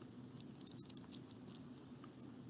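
Near silence: quiet room tone with a few faint, light ticks in the middle.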